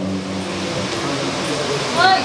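Steady background noise with indistinct voices. A held low-pitched tone dies away in the first half-second.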